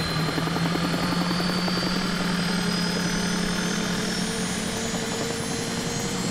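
Helicopter running with its rotor turning: a fast steady rotor chop under an engine whine that slowly rises in pitch.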